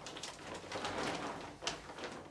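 Rustling of a cloth tote shopping bag as a hand rummages inside and lifts out a small plate of ornaments, with a sharp knock near the end.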